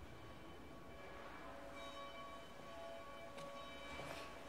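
Faint church organ playing soft, sustained held notes after the homily, growing clearer about two seconds in, with a small click near the end.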